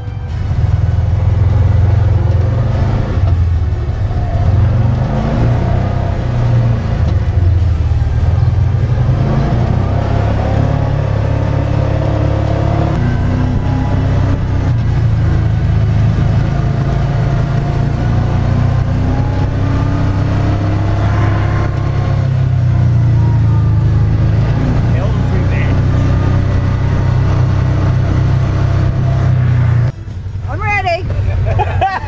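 Side-by-side UTV's engine running as it is driven along a paved road, a steady low rumble throughout, with the engine pitch rising and falling as it speeds up and eases off.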